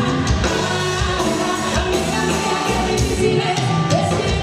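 Live Tejano music: a woman sings lead into a microphone over acoustic guitar and band accompaniment, with a steady beat.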